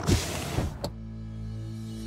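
Intro logo sting: a sudden noisy hit that fades away, a short click just before a second in, then a held low synth chord.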